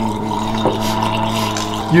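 A man gargling a mouthful of wine with his head tipped back, voicing one steady low tone through the liquid that stops near the end.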